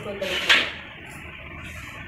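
A voice speaking briefly, then quiet room tone.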